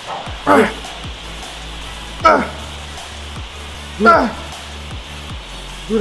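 A man's short, loud effort shouts ('A!') with each press of a heavy dumbbell set, three of them about two seconds apart, each dropping in pitch, over background music.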